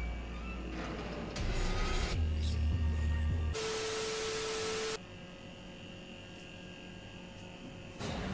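Pop song with heavy bass from a stage performance, cut off about three and a half seconds in by a burst of TV static with a steady beep tone lasting about a second and a half, used as a glitch transition. A faint hum follows.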